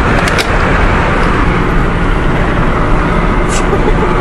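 Steady loud rush of road and wind noise inside a moving car's cabin, with a few brief clicks about half a second in and near the end.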